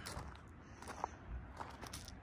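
Faint footsteps on gravel, a few soft crunches.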